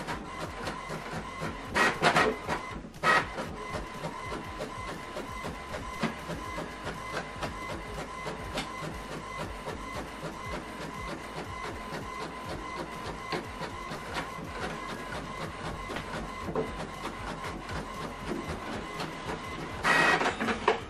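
HP Envy 6020e inkjet printer printing a colour page: a steady whine with fine, rapid ticking throughout, and two louder bursts about two and three seconds in.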